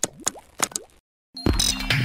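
Animated logo-intro sound effects: a quick run of pops with short rising boing-like glides in the first second. After a brief gap, loud intro music starts about one and a half seconds in.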